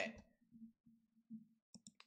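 Near silence, broken near the end by a few faint, sharp computer mouse clicks.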